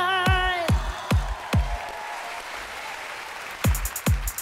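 A female singer's held note with vibrato ends over four kick-drum beats of a dance-pop backing track. The beat then drops out for about two seconds under audience applause, and the kick drum and hi-hats come back in near the end.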